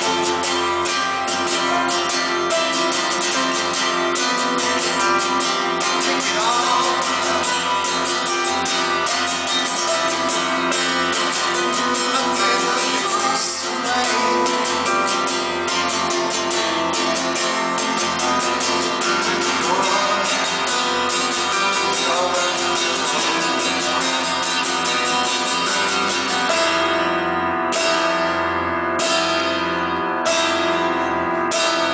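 Live acoustic ballad: an acoustic guitar strummed steadily under singing, with piano. Near the end the strumming thins to separate strokes.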